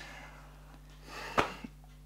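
Quiet room with a low steady hum; about a second in a soft breath swells and ends in a single sharp click.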